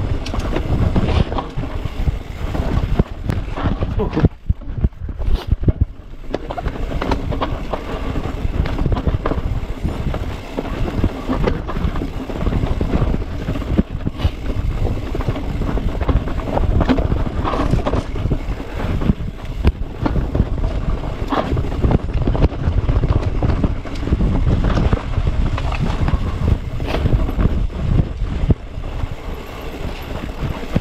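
Wind buffeting an action camera's microphone while a mountain bike rides a rough dirt singletrack, with frequent knocks and rattles from the bike over the ground and a brief lull about four seconds in.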